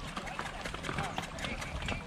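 Mules' hooves knocking on the stones of a shallow streambed and stirring the water, with faint voices of riders.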